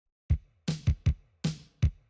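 Music opening with a sparse drum beat: after a brief silence, about six kick and snare hits.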